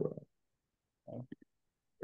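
A man's voice on a video call: the end of a spoken word, then dead silence, then about a second in a brief low murmured 'mm' in a few short pulses.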